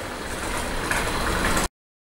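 Atlas N scale two-truck Shay model locomotive running along the track with a train of freight cars: a steady whir of its motor and gears with wheel rumble, slowly growing louder, then a sudden cut to silence near the end.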